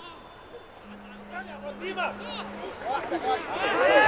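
Faint, distant shouting voices of players celebrating on the pitch just after a goal, over quiet stadium ambience, with a low steady hum for a couple of seconds.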